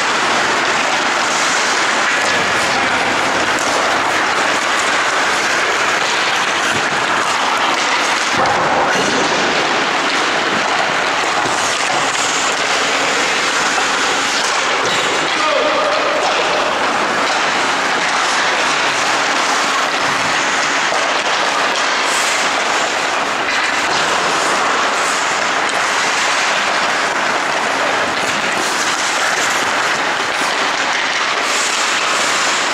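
Loud, steady noise of an indoor ice rink during a hockey drill: skates and sticks on the ice with voices mixed in.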